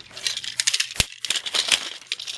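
Plastic toy trains and trucks clattering against each other as they are handled and piled up, with one sharp knock about halfway through.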